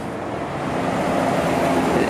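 Steady outdoor rushing noise, like distant road traffic, growing slightly louder, with a faint low hum underneath.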